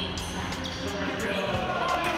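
A basketball bouncing on a hardwood gym floor during a game, under background music.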